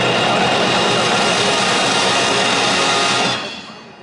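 Full marching band, brass with drums and percussion pit, holding a loud, dense closing chord that cuts off about three seconds in.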